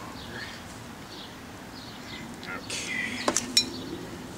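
Metal hand tools handled: a brief scrape, then a few sharp metallic clinks close together about three quarters of the way through.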